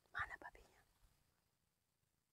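A short, soft whispered utterance about a quarter second in, then near silence.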